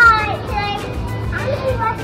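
A young girl's high-pitched voice calls out "Hi!" at the start, the loudest sound here, followed by more short bits of child's voice, over background music with a beat.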